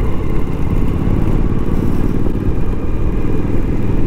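Motorcycle riding at a steady pace on a gravel dirt track: an even low rumble of engine and riding noise.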